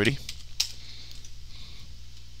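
Computer keyboard typing: a quick run of key clicks, clearest in the first second and fainter after, over a low steady hum.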